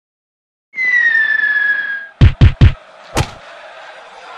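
After a brief silence, a steady high whistle-like tone sounds for about a second and a half, sinking slightly in pitch. Three heavy booming thuds follow in quick succession, then a fourth half a second later, and a faint steady background hiss remains.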